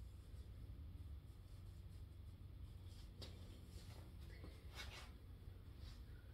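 Near silence: low room hum, with a few faint, brief soft noises about halfway through.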